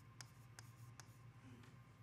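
Faint taps and strokes of a pen writing a word on a whiteboard: three light ticks in the first second, then only faint scratching.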